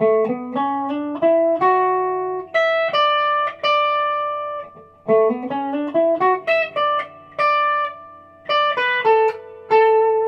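Electric guitar playing a single-note melodic run high on the neck, the first part of a two-part guitar harmony. It comes in two phrases with a short break about five seconds in, and some notes glide up into pitch.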